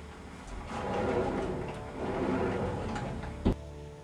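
An interior door being opened with some rattle and handling noise, then pulled shut with a sharp bang about three and a half seconds in.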